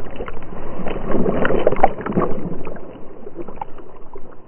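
Water splashing and churning right at a dog-mounted camera as a dog plunges into a lake and begins swimming, with many sharp splashy pops. The splashing is heaviest through the first two seconds or so, then eases to a lighter sloshing.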